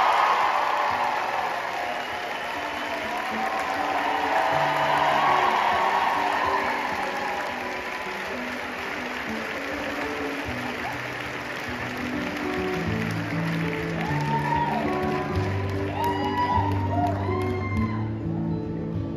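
Concert audience applauding and cheering, loudest at the start and swelling again a few seconds in before dying down. Under it an acoustic guitar plays an intro, which grows fuller near the end.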